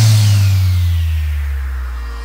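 Electronic dance track in a break: the drums drop out, leaving a held deep bass note that slowly fades, with a faint falling sweep above it.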